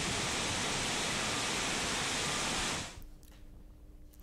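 Steady rushing hiss of water that stops abruptly about three seconds in, leaving near silence.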